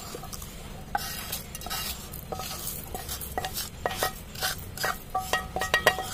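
Wooden spatula stirring and scraping whole spices, coriander seeds among them, as they dry-roast in a steel kadai, the seeds rattling against the metal. Clicks and knocks come thicker and louder near the end as the spices are scraped out over the rim, the pan ringing briefly at the sharper knocks.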